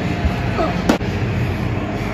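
A baseball popping into a catcher's mitt: one sharp crack about a second in, over a steady background rush.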